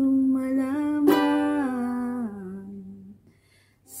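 A woman singing one long held note over a strummed ukulele, with a single strum about a second in. The note steps down in pitch and fades out a little after two seconds, leaving a brief near-silent pause.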